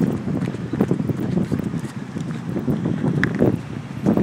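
Wind and handling noise rumbling on a phone's microphone as it is carried at a walk, with irregular knocks.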